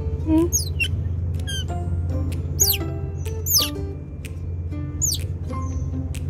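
Baby otter squeaking: a series of short, high, falling chirps about once a second. Behind them plays background music with a steady low bass.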